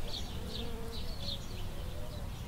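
Chick peeping: a string of short, high cheeps, about three a second, over a low steady rumble.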